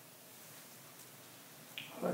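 A single short, sharp click against a quiet room near the end, after a fainter tick about a second in. Its source is unexplained.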